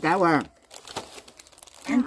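A brief bit of talk, then soft crinkling and light clicks from a sheet of dry rice paper being handled for wrapping, before talk resumes near the end.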